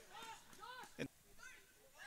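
Near silence on a football pitch, with a few faint, short shouted calls from distant voices and a brief click about a second in.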